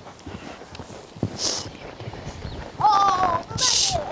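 Pony's hooves cantering on a sand arena, a run of soft, irregular thuds. About three seconds in there is a brief high-pitched voice call, and a short loud hiss comes near the end.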